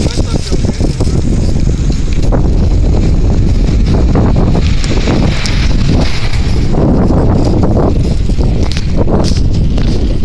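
Wind buffeting the microphone of a camera carried on a moving bicycle: a steady low rumble, with scattered knocks and rattles from the bike.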